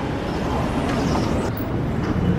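Steady rushing outdoor background noise with a low hum underneath and no single clear source.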